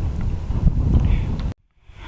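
Wind buffeting an outdoor camera microphone, a low rumble, which cuts off abruptly about one and a half seconds in.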